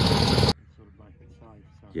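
Light plane's engine running, heard inside the cabin as loud steady noise, which stops abruptly about half a second in at a cut. After that, quiet with faint voices.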